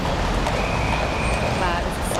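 City street traffic: a steady low rumble of buses and other vehicle engines, with voices of onlookers. A thin high whine holds for about a second in the middle.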